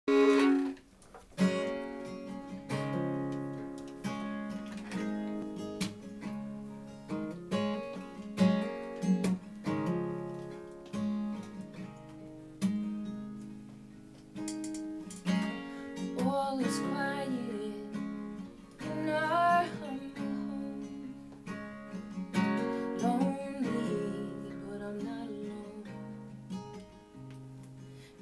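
Instrumental intro on acoustic guitar, picked and strummed, joined about halfway through by a fiddle playing a sliding melody with vibrato.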